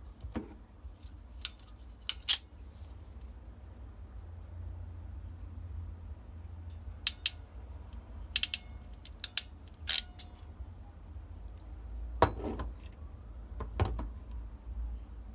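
Ratcheting hand crimping tool clicking as a terminal is crimped onto a wire, heard as scattered sharp metallic clicks, some in quick runs of two or three, along with small tools being handled. A low steady hum runs underneath.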